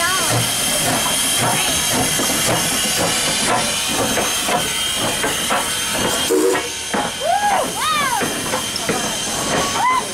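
Steam locomotive No. 89, a 2-6-0, drifts slowly past close by, its steam hissing steadily with scattered knocks from the engine. Brief voiced exclamations rise and fall near the start and again near the end.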